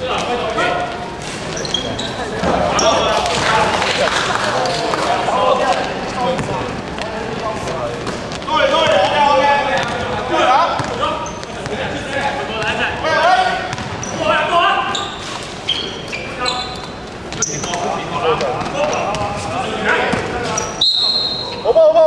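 Basketball being dribbled and bounced on a sports-hall court, with players' voices calling out in the echoing hall. A referee's whistle sounds once, about a second long, near the end.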